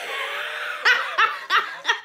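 A woman laughing: a breathy start, then about four short, sharp bursts of laughter in quick succession.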